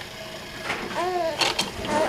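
A young baby's single short coo, rising and then falling in pitch, followed by a few light clicks and rattles from the plastic toys on a bouncy seat's toy bar.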